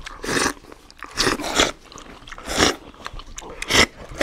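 Kheer (milky rice pudding) being slurped and chewed straight off plates by mouth, without hands: four or five short, loud, hissy slurps about a second apart.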